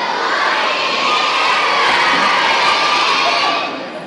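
A crowd of young schoolchildren calling back a drawn-out "good morning" in unison. The chorus fades away near the end.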